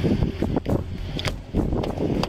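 Wind buffeting a police body camera's microphone, a low rumbling noise broken by a few short knocks as the camera moves.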